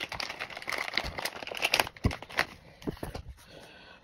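Plastic anti-static bag crinkling and crackling as it is torn and pulled open, in an irregular run of rustles that dies down over the last second.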